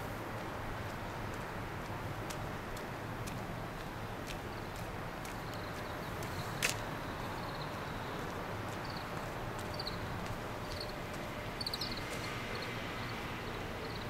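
Steady outdoor background hum with faint short chirps from about nine seconds in and a single sharp click about six and a half seconds in.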